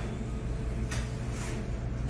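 A steady low mechanical hum with several held tones, with a brief soft rustle at the start and another about a second in.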